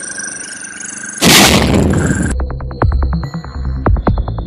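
Electronic background music. A loud, noisy swell about a second in gives way near the middle to a beat with fast clicking percussion over steady synth tones.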